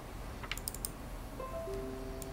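A few clicks of typing on a laptop keyboard, then, about one and a half seconds in, a short electronic chime of four held notes entering one after another, each lower than the last.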